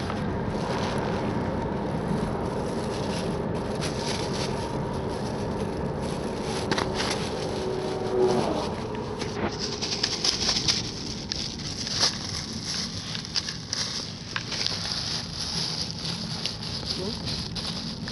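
Steady road and engine noise inside a moving car. From about halfway, rustling and clicking as plastic bags are handled close by.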